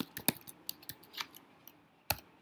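Computer keyboard being typed on: a run of irregular key clicks, thickest in the first second and a half, then a lull.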